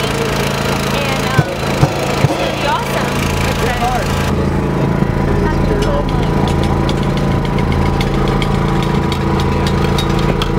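Portable generator running steadily with people talking over it. A few sharp knocks come early on, and about four seconds in the sound changes abruptly, the hiss dropping away and a run of light clicks following.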